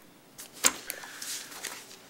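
Papers handled close to a desk microphone: one sharp tap a little over half a second in, then a brief rustle.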